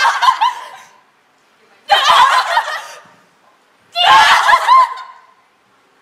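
Women laughing in three loud bursts, each about a second long and about two seconds apart.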